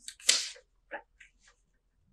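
A paper hand cutout rustling and tapping against a cloth-covered table as it is shifted along: a click, a brief rustle just after it, and a few faint ticks about a second in.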